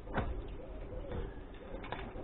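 A bird calling faintly with a low, wavering call, and a light knock of wood being handled near the start and again near the end.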